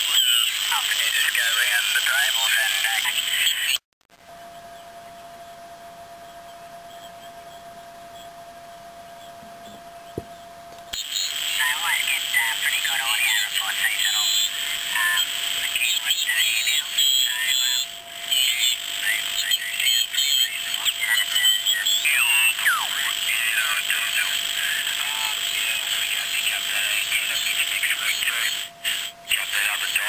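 Amateur radio voice stations on 80 metres heard through an amplified crystal set whose beat frequency oscillator lets it receive single-sideband speech. The voices are hard to make out, with hiss and a steady whistle under them. About four seconds in the voices drop out briefly to quieter hiss and the whistle, and they return about eleven seconds in.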